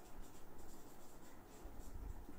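Faint scratching of writing strokes.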